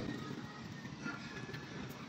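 Faint, steady outdoor background noise: a low even hiss with no distinct knocks or clicks.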